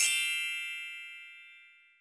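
A single bell-like chime sound effect, struck once, its ringing fading away over about two seconds.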